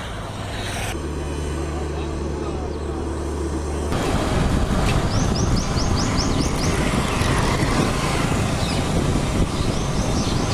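Street ambience from a roadside: a steady low engine hum for the first few seconds, then a louder rough rumble of traffic with voices in the background from about four seconds in, and a quick run of high chirps near the middle.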